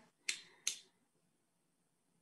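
Two short, sharp noises about a third of a second apart.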